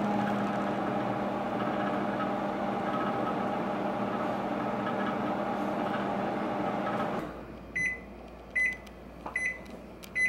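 Microwave oven running with a steady hum, cutting off about seven seconds in, then beeping three times in even succession to signal that the cooking cycle has finished.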